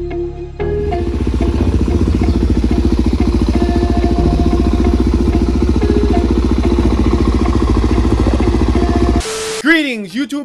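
Motorcycle engine running with rapid, even firing pulses, starting about half a second in and stopping shortly before the end, with background music under it.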